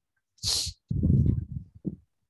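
Puffs of air striking a headset or webcam microphone: a short hiss, then a longer, heavy low rumble, and a brief puff near the end.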